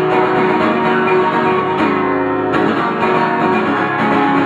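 Acoustic guitar strummed live, with no singing; about two seconds in the strumming stops briefly and a held chord rings before the playing picks up again.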